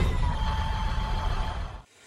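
Tail of a channel-intro sound effect: a whooshing noise with a faint held tone that fades out and stops just before the end.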